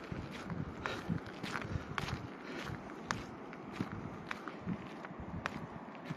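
Footsteps on a wet gravel dirt track, a person walking at a steady pace of about two steps a second.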